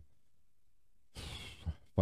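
A man's audible breath into a close microphone, a short sigh or intake lasting about half a second, coming after a second of near silence.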